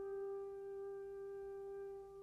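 Quiet orchestral film score: a single soft note held and slowly fading.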